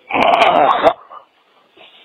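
A person's short wordless vocal sound, lasting under a second, heard through the narrow, muffled audio of a recorded phone call.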